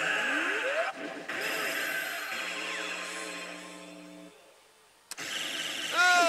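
Oshi! Bancho 3 pachislot machine playing its battle-animation sound effects: a rising sweep, then held tones that fade away to near silence. About five seconds in, a sharp hit breaks the hush and a new burst of effects starts as the battle result is revealed.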